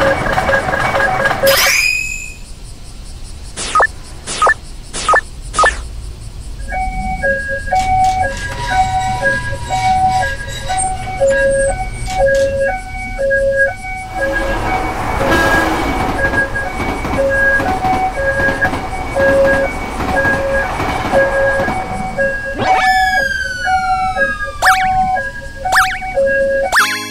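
Railroad crossing warning alarm from an animated crossing: two electronic tones alternating high and low, about once a second, starting about seven seconds in. Before it there is a loud rush and four sharp clacks. In the second half a rushing noise runs under the alarm, and near the end come a few falling whistle-like sweeps.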